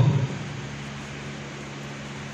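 Steady hum of room ventilation, a constant low drone with an even hiss over it.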